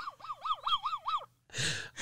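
A man's high-pitched laugh that rises and falls in pitch about six times in quick succession, then a gasping intake of breath near the end.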